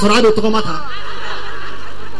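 A voice, then chuckling laughter taking over less than a second in.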